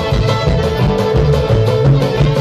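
Live string band playing an instrumental bluegrass-style passage: bowed fiddle, banjo, mandolin, acoustic guitar and upright bass over a steady, driving beat.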